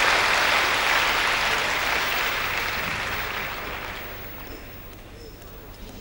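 Arena crowd applauding, loud at first and then dying away over the second half.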